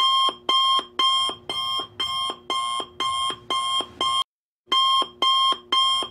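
Smartphone alarm beeping in a steady pattern of about two beeps a second, with a short break about four seconds in before it carries on.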